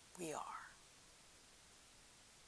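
A woman's voice saying two words, lasting about half a second, followed by near silence with faint room tone.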